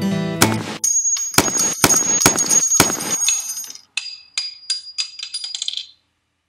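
Acoustic guitar music ends, and a sound effect follows: about five sharp, loud cracks like gunshots, with a high metallic ring after them. Then comes a spent brass shell casing bouncing on a hard floor, its ringing bounces coming quicker and quicker until it comes to rest.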